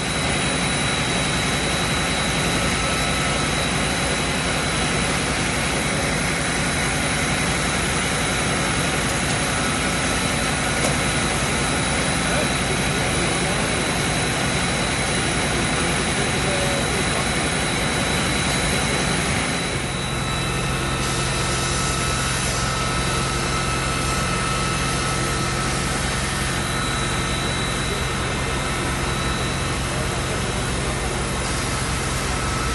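Fire-truck engines running steadily, a dense, unbroken drone with a constant high whine over it; the sound shifts to a lower hum about twenty seconds in.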